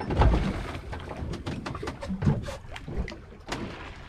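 Wind and water noise on a fishing boat at sea, with a low bump right at the start and scattered small clicks and knocks through the rest.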